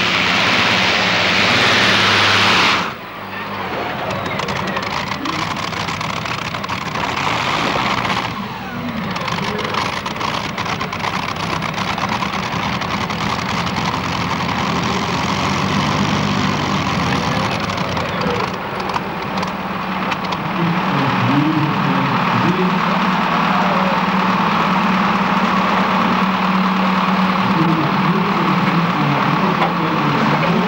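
Competition pulling tractor's engine at full power under load from the weight sled, dropping off sharply about three seconds in, at the end of a full pull. It then runs on at lower revs for the rest.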